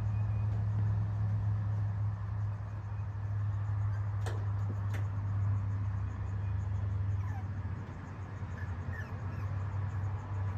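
A steady low hum carries throughout, with two sharp clicks about four and five seconds in. A few faint, short squeaks come from young puppies exploring on the porch.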